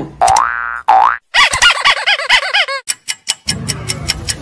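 Cartoon-style comedy sound effects dubbed onto the reel: two quick rising boing glides, then a run of fast bouncing warbles, followed by a few clicks.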